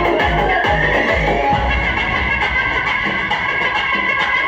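Loud DJ dance music from a sound system. A heavy bass beat runs about two and a half times a second, then drops out about a second and a half in as a rising tone sweeps up, and the music carries on without the strong beat.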